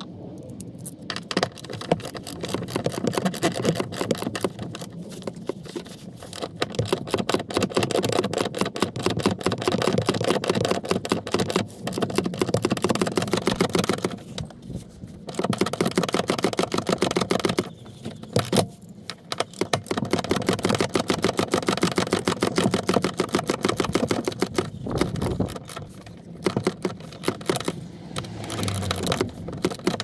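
Socket ratchet clicking in long rapid runs as the seatbelt's lower anchor bolt is tightened, with a few brief pauses.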